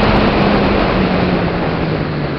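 Wind rushing over the microphone of a radio-controlled model plane in flight, over the steady hum of its motor and propeller, whose pitch eases slightly lower.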